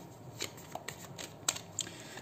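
Tarot deck being shuffled by hand: soft rustling of cards with a few light clicks as they slap together, the sharpest about one and a half seconds in.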